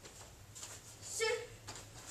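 A child's short shout about a second in, the kind of yell given with each roll and jump in a taekwondo drill, with a few faint knocks from the child rolling on foam floor mats.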